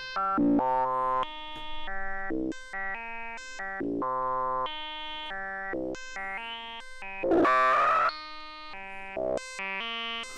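Synthesizer sequence of short pitched notes played through the Three Tom Modular Steve's MS-22 filter, set up as a static-bandwidth bandpass filter, its tone shifting as the filter knobs are turned. A louder, brighter resonant swell stands out about seven and a half seconds in.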